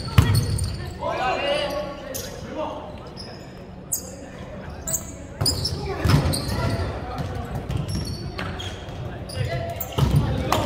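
Volleyball rally in a gymnasium: several sharp slaps of hands and forearms on the ball, with players shouting between contacts, all echoing in the large hall.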